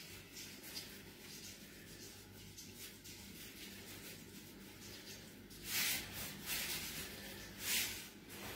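Faint, scratchy rustling of salt being sprinkled by hand into a pot of tomato sauce, with a few louder brief rustles around six and eight seconds in.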